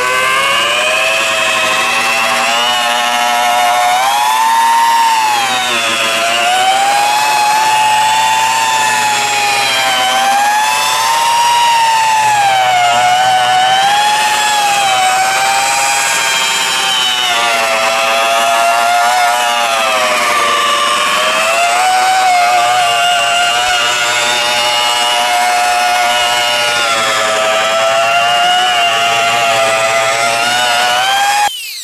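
Electric polisher with a foam pad running continuously while buffing a plastic camper bubble window, its motor whine sliding up and down in pitch every second or two.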